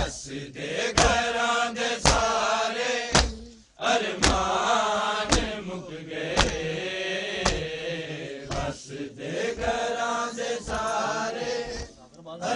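A crowd of men chanting a Punjabi nauha (mourning lament), punctuated by sharp, regular slaps of matam (chest-beating) landing about once a second. The chanting dips briefly about three and a half seconds in, then resumes with the same beat.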